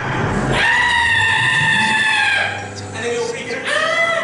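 A person screaming: one long, high-pitched scream held for about two seconds, then a second, lower scream beginning near the end.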